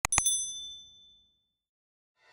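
Two quick mouse-click sound effects, then a bright notification-bell ding that rings out and fades over about a second and a half.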